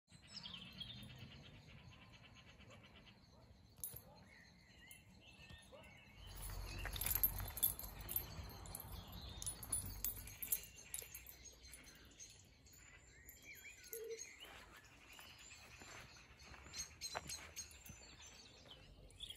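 Faint birdsong and chirping. A low rumble on the microphone comes in from about six seconds in and lasts a few seconds. Scattered light clicks of footsteps on a dirt path run under it.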